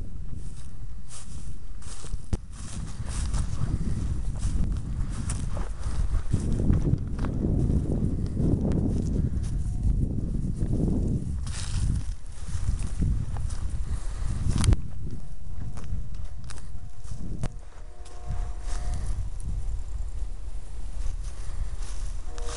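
Footsteps and rustling through dry grass and brushy thicket, with rough, rumbling noise on the microphone and many small crackles of twigs.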